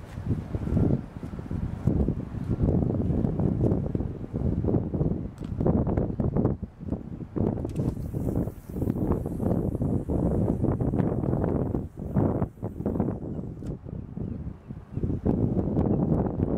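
Wind buffeting the microphone: a gusty low rumble that rises and falls unevenly throughout.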